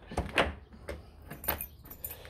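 Handle and multipoint lock of a newly fitted uPVC front door being worked by hand: a string of short clicks and clunks, about half a dozen in two seconds.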